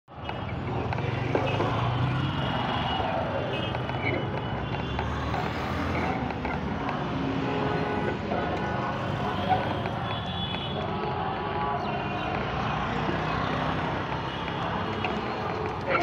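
Busy street ambience: steady traffic noise with indistinct voices of people talking.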